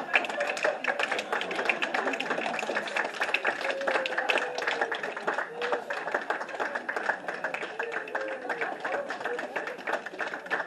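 Audience clapping: a dense run of quick claps, with crowd voices mixed in.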